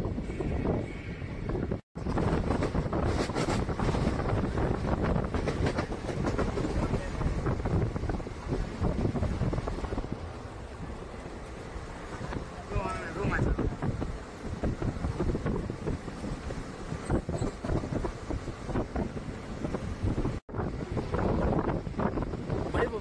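Moving passenger train heard from inside a coach at an open window: a steady rumble of wheels and carriage with wind buffeting the microphone. The sound cuts out completely for a moment twice, about two seconds in and near the end.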